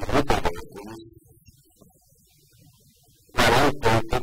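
Music, in loud pitched phrases, with a near-silent gap of about two seconds in the middle.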